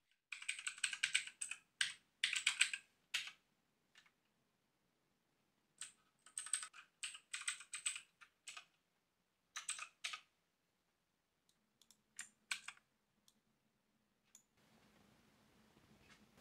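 Typing on a backlit mechanical computer keyboard: quick runs of key clicks in several bursts, separated by pauses of a second or two, thinning to a few scattered keystrokes near the end.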